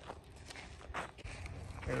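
A few faint footsteps on dirt and gravel, soft short steps over low outdoor noise, with a man's voice starting right at the end.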